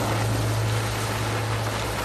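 Steady engine noise: a broad, even hiss over a constant low hum.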